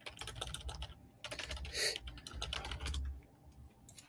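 Typing on a computer keyboard: a quick run of key clicks that thins out near the end.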